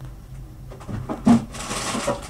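Items being fetched from a kitchen freezer: a few knocks and a loud thump about a second in, then rustling, over a low steady hum.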